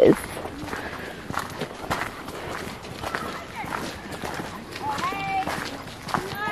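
Footsteps walking on a gravelly dirt path, a run of short, irregular scuffs and crunches.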